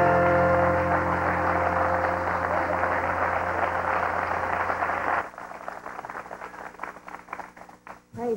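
A gospel band holds the song's final chord, with electric bass and keyboard under applause from the audience. About five seconds in the band cuts off and the clapping carries on, thinning out.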